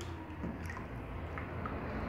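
Wet paper pulp being squeezed and pressed by hand onto a papermaking screen frame in a tub of water: faint soft squelching with a few small ticks, over a steady low hum.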